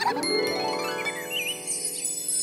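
A cartoon magic sound effect: a held, shimmering chord with twinkling chimes over it.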